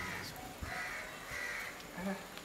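A bird calling about four times in two seconds, each call short.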